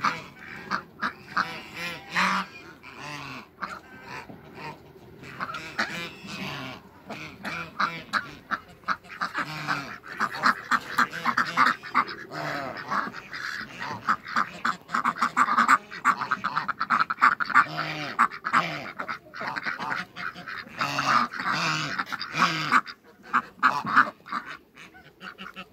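A flock of domestic ducks quacking and chattering in rapid, overlapping calls, busiest and loudest around the middle.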